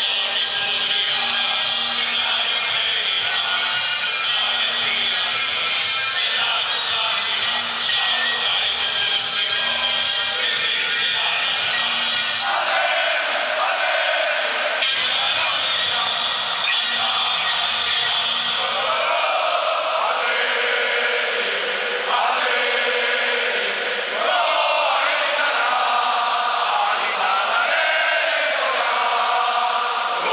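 A stadium crowd of thousands singing together while music plays over the public address. About halfway in, the crowd's massed singing takes over and the steady low tones of the music fall away.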